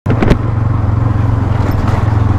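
Bajaj Pulsar NS200's single-cylinder engine running at a steady, low speed as the motorcycle rolls along, heard from the rider's seat. Two short clicks come right at the start.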